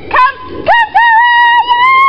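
A dog whining close by: a run of high-pitched squeals, each starting with a quick rise in pitch, the last one drawn out and held.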